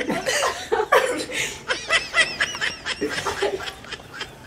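Several people laughing together in snickers and chuckles, with a quick run of high-pitched giggles about two seconds in.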